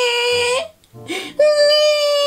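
Baby crying: two long cries, the first falling in pitch and breaking off about half a second in, the second starting about a second and a half in and held steady, over quiet background music.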